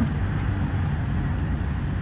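Steady low background rumble with no distinct events, heard in a pause between spoken sentences.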